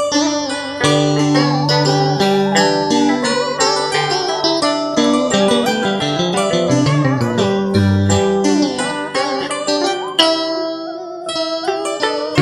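Instrumental vọng cổ karaoke backing: plucked strings, a guitar and a zither, play a melody full of bent, wavering notes, with no singing voice. Around ten seconds in the high notes thin out briefly before the playing fills in again.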